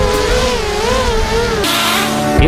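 FPV racing quadcopter's motors whining in flight, the pitch wavering up and down. A hiss comes in about one and a half seconds in.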